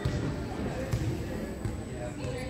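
A volleyball bouncing on a hardwood gym floor: a few dull thuds, over the chatter of players and spectators.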